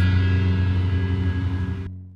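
The last held low chord of a rock band playing, on electric guitar and bass. It rings steadily, then fades over the second second, with the upper tones stopping just before the lowest ones cut off.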